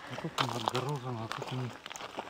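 Speech: a voice talking briefly and quietly, with a few faint clicks.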